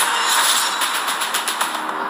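Rapid bursts of automatic gunfire as film sound effects, a quick series of sharp shots over a music score.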